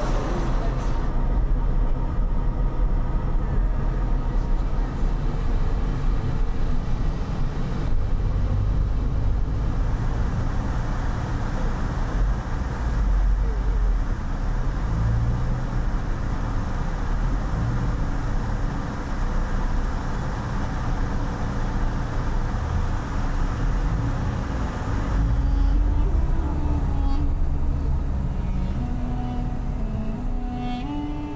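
Road noise of a car driving, heard from inside the cabin: a steady low rumble of engine and tyres. Music comes in near the end.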